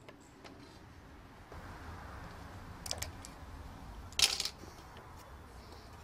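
Metal handling noise from a Hickok Model 270 function generator's sheet-metal case and carrying handle on a steel table. A soft scrape comes around two seconds in, a few light clicks near three seconds, and a louder metallic clatter a little past four seconds.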